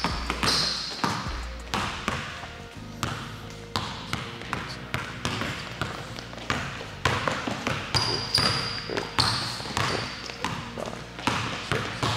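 A basketball bouncing repeatedly on a hardwood gym floor at an uneven pace, with brief sneaker squeaks on the wood about half a second in and again around eight seconds in.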